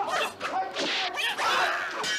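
Fight sound effects: weapons swishing through the air in quick whooshes, the loudest in the second second, over fighters' shouts.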